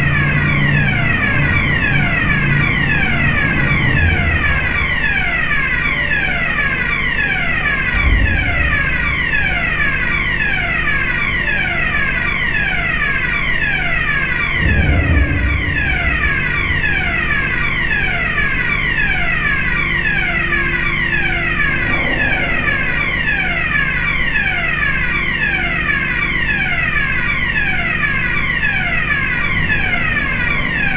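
Ferry vehicle-deck warning alarm sounding as the bow doors open and the ramp lowers: a falling tone repeated over and over without a break, over the steady low hum of the ship's machinery. A knock about a quarter of the way in and a heavier low rumble about halfway through.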